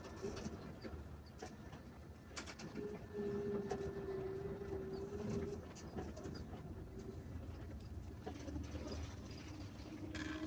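Inside a moving bus: a low, quiet rumble of engine and road, with a steady flat hum that holds for a couple of seconds in the middle and returns, a little lower, near the end, and a few light rattles.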